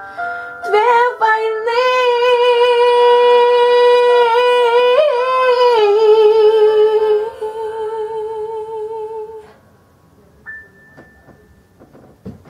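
A woman singing one long held note with vibrato over a piano backing track. About six seconds in she drops to a slightly lower note, which she holds until it ends about nine and a half seconds in.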